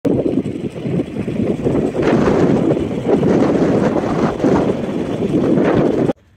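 Loud wind buffeting the microphone outdoors, a dense, rough rumble of noise with no clear tone.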